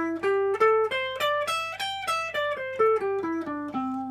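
Electric guitar, tuned a whole step down, playing a major pentatonic scale one note at a time: a D-shape pattern that sounds as C major pentatonic. It climbs for about a second and a half, runs back down and ends on a held low note.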